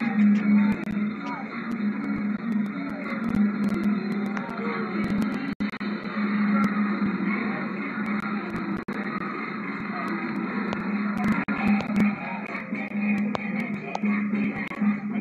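Parade music mixed with voices, playing from a live television broadcast and heard through the TV's speaker, with a steady low hum and a couple of brief dropouts.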